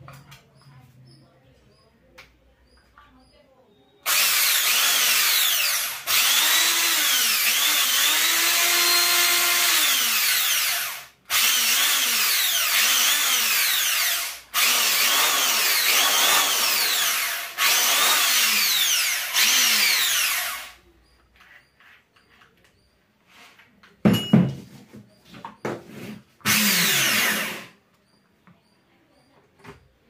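Handheld electric drill being run in a series of trigger pulls, each a few seconds long, with its motor pitch rising and falling as the speed changes: a test run of the drill after repair. Near the end, after a pause, come a few clicks and one more short burst.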